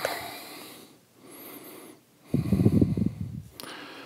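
A man breathing out in a fading hiss, then, after a short pause, a low nasal sound lasting about a second.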